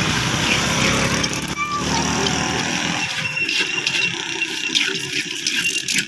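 A motor vehicle engine running close by, its low rumble dropping away about three seconds in.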